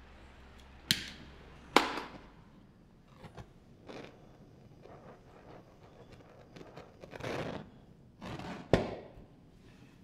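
Handheld butane torch: sharp clicks of its igniter twice in the first two seconds and once more near the end, with short hissing bursts of flame between them. The torch is being used to heat pulled sugar for welding.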